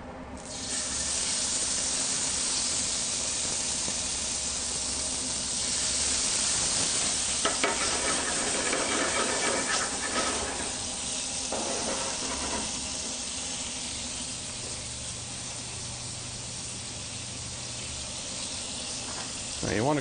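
Pieces of meat searing in hot oil in a skillet: a loud sizzle starts suddenly about half a second in as the meat goes in. It is strongest through the middle, with a few sharp clicks, and eases off somewhat in the last few seconds.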